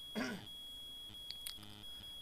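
Faint electrical noise from the recording setup: a steady thin high-pitched whine, with a short low buzz near the end. A brief voiced murmur with falling pitch comes just after the start, and two soft clicks come about halfway through.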